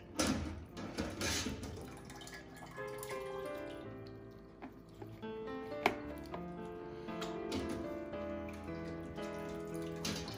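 Background music, over wet splashing and dripping of whey as cheese curds are scooped from the pot with a slotted ladle and dropped into molds. The splashing is loudest in the first second and a half, and a sharp click comes about six seconds in.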